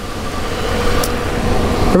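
A vehicle engine running with a steady hum and a faint whine, growing slowly louder.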